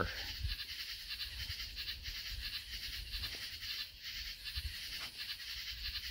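Faint, steady background nature-sound track, a soft high hiss of outdoor ambience with occasional faint ticks.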